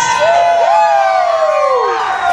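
A siren-like synth effect in a hip-hop backing track played over a PA: several overlapping tones slide slowly downward, with the bass and drums cut out.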